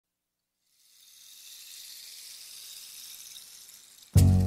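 Faint, steady high-pitched rushing hiss, a sound effect under the opening logo animation, fading in about a second in and holding with no pitch or rhythm.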